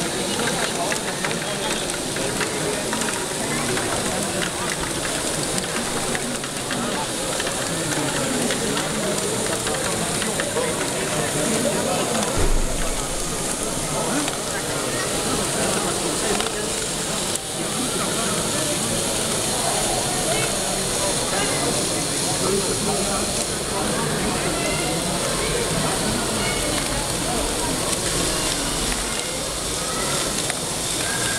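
Steady crackling clatter of small plastic balls rattling and dropping through motorized LEGO Technic ball-moving modules, over background chatter of people. A brief thump comes about twelve seconds in, followed by a low rumble that stops near the end.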